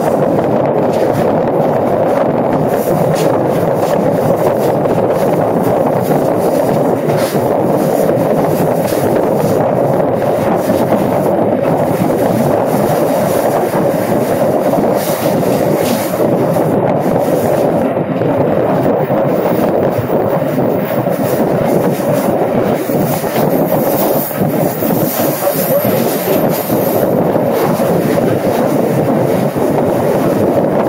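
Passenger train cars rolling along the track, heard from aboard the train: a loud, steady rumble of steel wheels on the rails.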